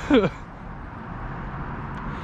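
A man's voice for a moment at the start, then steady low background noise with no distinct sound standing out.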